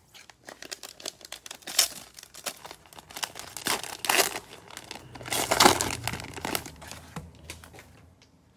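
Plastic cellophane wrapper of a Panini Prizm basketball cello pack crinkling and tearing open by hand, in a run of crackles with louder bursts, the loudest tear about five and a half to six seconds in, then fading out.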